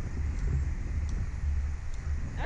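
Wind buffeting the microphone of a camera mounted on an open-air Slingshot ride capsule: a steady low rumble with a faint hiss above it.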